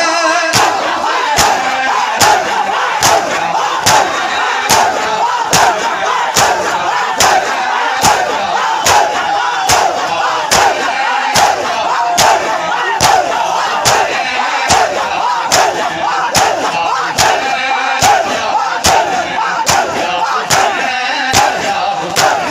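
A large crowd of men doing matam, striking their bare chests in unison in a steady beat about once a second, with massed chanting voices over the strokes.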